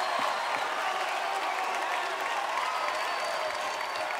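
Audience applauding steadily at the close of a live gospel song, with scattered voices in the crowd.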